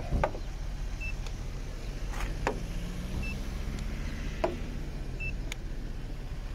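Paint thickness gauge beeping three times, about two seconds apart, as it takes readings on a car's bonnet, with faint clicks of the probe touching the panel, over a steady low hum.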